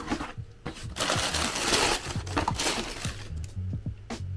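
A cardboard shoe box being opened and its tissue paper rustled, a dry crinkling noise for about two seconds from a second in, with a shorter burst near the end. Background music with a bass line plays underneath.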